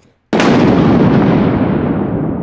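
An explosion-like boom sound effect: a sudden loud hit about a third of a second in, followed by a long rumbling tail that slowly fades.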